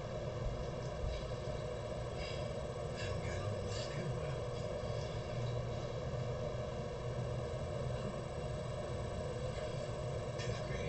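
Steady low hum of room background noise, with faint, indistinct voices now and then.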